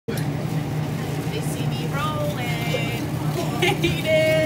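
A steady low machine hum, with a person's voice coming in about halfway through.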